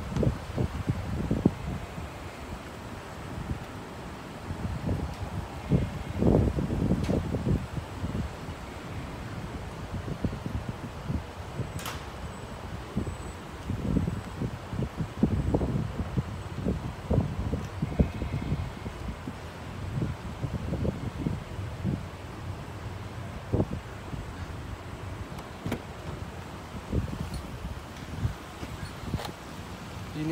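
Wind buffeting the microphone: uneven low rumbling gusts, with an occasional faint click.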